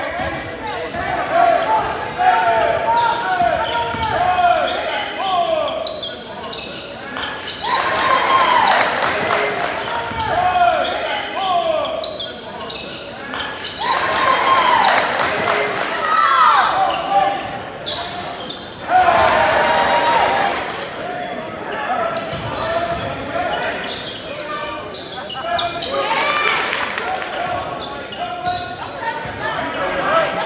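Live sound of a basketball game in a large gym: the ball bouncing on the hardwood floor, sneakers squeaking in short pitched chirps, and the voices of players and spectators echoing in the hall. The crowd noise swells several times.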